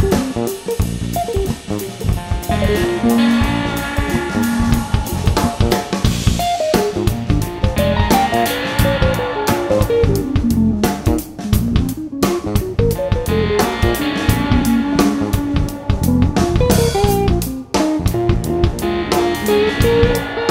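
Funk-rock instrumental: electric guitar playing melodic lines over electric bass and a drum kit, with runs that step down in pitch and climb back up.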